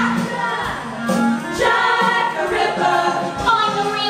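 A group of voices singing a musical-theatre song together, over music with short sharp beats.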